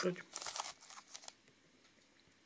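Plastic wrapper of a wafer bar crinkling in short bursts for about a second as it is handled.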